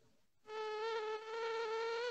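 A steady, even buzzing tone with a stack of overtones on a live video call's audio line. It starts about half a second in after a brief dropout. It is a strange noise coming through the guest's connection, which the host thinks headphones would cure.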